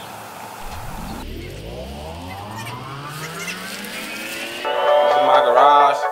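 An engine-like revving sound rising steadily in pitch for about four seconds. Louder music with a voice comes in near the end.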